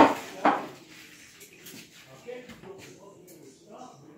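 Two sharp clatters of kitchenware about half a second apart, then quieter handling noises.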